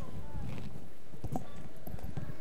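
Footsteps of a group of children walking off carpeted steps: many soft, irregular low thuds, with faint chatter among them.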